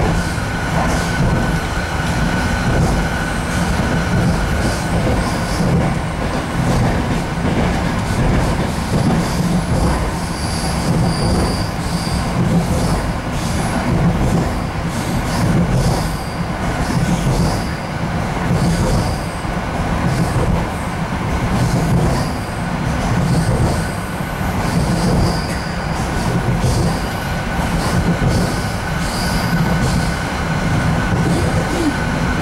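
Inside an RA2 diesel rail bus running at speed: a steady rumble of wheels on the rails and the running gear, with a faint steady whine. Short, high-pitched wheel squeaks and ticks come and go throughout.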